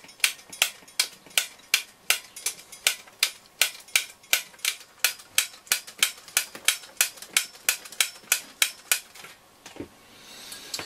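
The radio's switch bank being pressed over and over, sharp clicks about three a second, to work freshly sprayed switch cleaner through the contacts. The clicking stops about nine seconds in.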